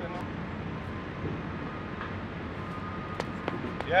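Steady outdoor background noise with a few light clicks near the end.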